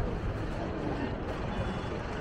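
Busy street ambience: a steady rumble of traffic with people's voices in the background.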